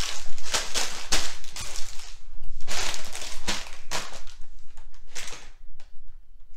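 Clear plastic LEGO parts bags crinkling and rustling as they are picked up and shuffled around, a run of quick irregular crackles that thins out near the end.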